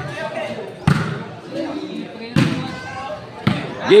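A ball being hit during a rally: three sharp hits roughly a second and a half apart, with another at the very end, over a background of crowd voices.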